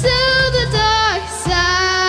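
A girl singing solo through a microphone and PA over a musical accompaniment, holding two long notes, the first sliding down about a second in.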